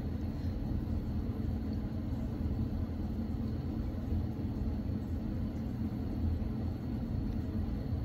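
Steady low background rumble with a faint, thin high tone held throughout; no distinct events.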